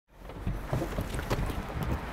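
Wind buffeting the microphone in a steady low rumble, with a few light knocks spread through it.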